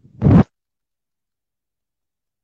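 A short, loud scraping rustle right against a phone's microphone, lasting about a quarter of a second just after the start: handling noise from a hand or clothing brushing the phone.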